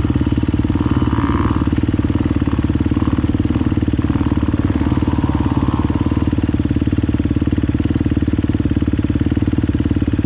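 Enduro dirt bike engine running steadily, with a higher note swelling a few times in the first six seconds.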